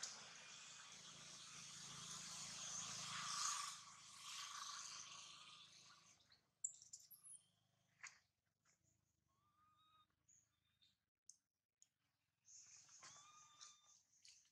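Faint outdoor hiss for the first six seconds, then near quiet broken by scattered small clicks and two short, high animal squeaks, one around the middle and one near the end.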